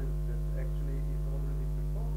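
Steady electrical mains hum, a low buzz with a ladder of overtones, under faint, indistinct speech from a distant voice.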